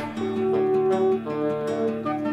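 Song music carried by strummed acoustic guitar, in a short passage without singing; fuller sung music picks up again just after.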